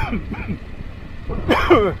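A man coughs once, sharply, about a second and a half in, over the steady low rumble of a motorcycle riding on a gravel road.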